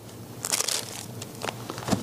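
Thin Bible pages being turned by hand, a papery rustle and crackle about half a second in, with a short knock near the end.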